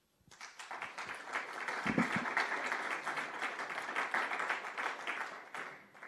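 Audience applauding: the clapping starts a moment in, holds steady through the middle and fades near the end.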